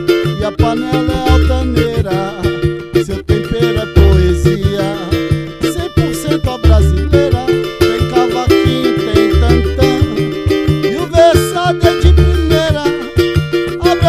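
A small samba group playing live: a cavaquinho strumming over a pandeiro and a large wooden hand drum. Deep low notes recur about every three seconds.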